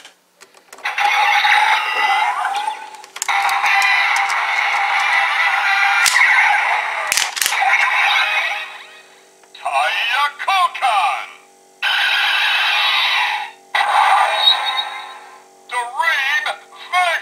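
Kamen Rider Drive toy belt (DX Drive Driver with Shift Brace) playing its electronic sound effects and recorded voice calls as the Shift Dream Vegas car is loaded. The music-like effects start about a second in, voice calls come near ten and fourteen seconds in over a steady hum, and there are a couple of sharp clicks around six and seven seconds in.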